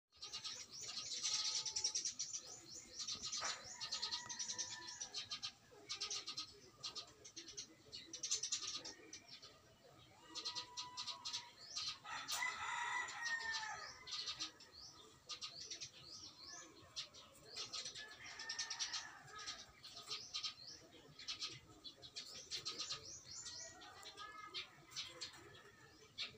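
Birds calling, chickens among them: many short, quick chirps all through, with a few longer calls, the clearest about twelve seconds in.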